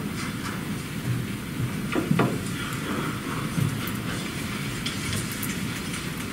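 Meeting-room background noise: a steady hiss and hum with a few faint knocks and rustles, the sharpest knock about two seconds in.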